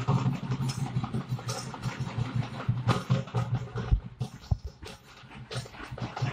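Dense crowd din with dhol and frame drums being beaten in an uneven flurry of strokes over a heavy low rumble, easing briefly about four and a half seconds in.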